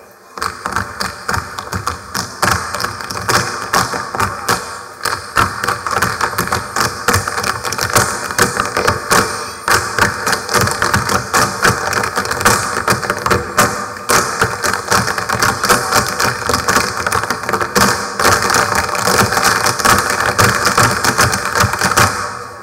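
Tap shoes of a large group of dancers striking a stage floor, a fast, dense stream of sharp metal taps that begins abruptly.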